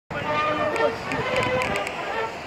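Indistinct voices over city street ambience.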